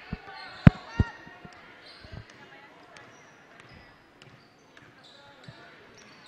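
A basketball bouncing on a hardwood gym floor a few times in the first two seconds, the loudest a sharp bounce under a second in, over faint chatter in the gym.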